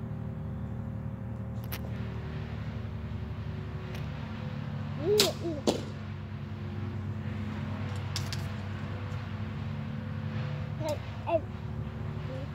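A 50-pound Eva Shockey Signature series compound bow is shot from full draw, giving a sharp snap of the string, with a few other short clicks around it. A steady low drone runs underneath throughout.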